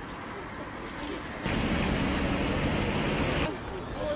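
Steady rushing outdoor noise with a low rumble under it, turning louder about a second and a half in and easing off shortly before the end.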